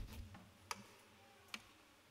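Near silence in a quiet room, with a sharp low thump at the very start and two faint clicks, a little under a second apart.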